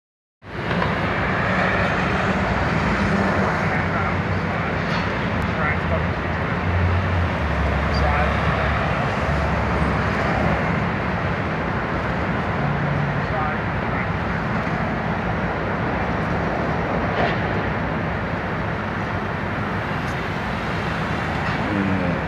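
Busy city street: a steady wash of traffic noise with low engine rumble and indistinct voices of passers-by.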